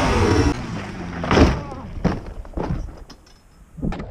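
A Yamaha Banshee ATV crashing in a flip: one loud hit about a second and a half in, then a few lighter knocks and thuds as it comes to rest, with a last knock near the end.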